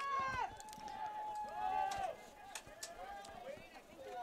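Faint voices calling out, with one long held shout from about half a second to two seconds in.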